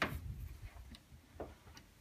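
A wooden cabinet door being moved by hand: a sharp click as it opens, then a few light clicks and knocks about a second and a half in.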